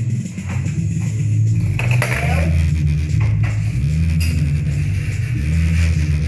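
Music played loud through a loudspeaker's woofer, with a heavy bass line of stepping notes and drum hits.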